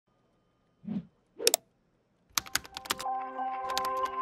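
Intro logo sting: two short swishes, then a quick run of sharp clicks about two seconds in that leads into a held musical chord.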